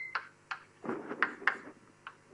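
A run of light, sharp clicks and taps, irregular at about three or four a second, with a brief high squeak right at the start.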